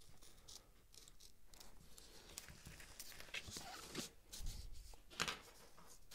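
Faint scratching of a hobby knife blade cutting through paper on a cutting mat, with light rustles and a few soft clicks and taps, the sharpest just after five seconds in, as the cut piece is freed and the knife is set down.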